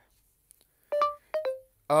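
Phone's Google voice-input tones: a short single beep about a second in, then a quick two-note chime that falls in pitch. Voice recognition has failed because the phone has no network connection.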